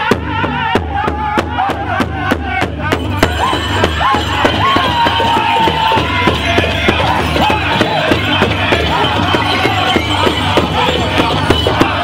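Powwow drum group: several men striking one large shared drum together in a steady beat of about three strokes a second, while singing a powwow song in high wavering voices.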